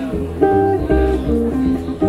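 Swing guitar trio's instrumental fill: a hollow-body jazz guitar plays a short run of single notes, about three a second, over plucked double bass notes.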